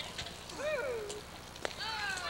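Children shouting and calling out, in high calls that rise and fall in pitch, with a sharp click about a second and a half in.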